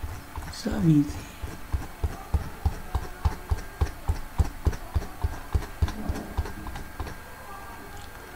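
A man says a short "so", then a run of soft, low knocks follows, about two or three a second, dying away about six and a half seconds in.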